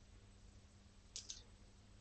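Near silence: faint room tone, with a quick pair of soft clicks a little over a second in.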